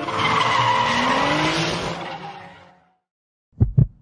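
Drift car tyres squealing, with a pitch rising under them, fading out before three seconds in; then two quick, deep thumps near the end.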